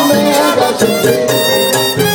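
Live Latin band playing salsa: congas, timbales and drum kit striking a busy rhythm under a sustained melody line.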